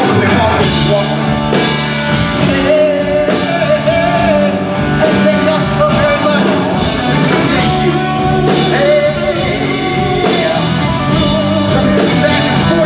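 Live rock band playing loudly: electric guitars over drums, with a held, wavering melody line carried on top.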